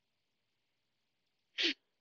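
Near quiet with a faint steady hiss. About one and a half seconds in comes a single short burst of breath noise from a person.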